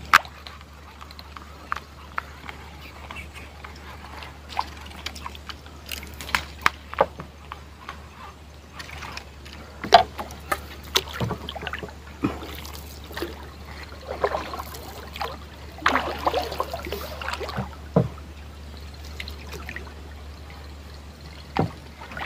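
Water sloshing and splashing against a small wooden boat's hull as it moves along the river, with scattered sharp knocks and clicks, the loudest about ten seconds in, over a steady low hum.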